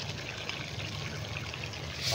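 A pan of chicken stewing in tomato-based sauce bubbling steadily as green peas and chunks of lunch meat are poured in from a container.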